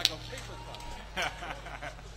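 Brief men's voices and laughter from the musicians over a low steady hum, with one sharp knock right at the start that is the loudest sound.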